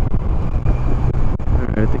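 Honda Rebel 250's air-cooled parallel-twin engine running at low speed in traffic, a steady low drone, with wind buffeting the helmet-mounted microphone.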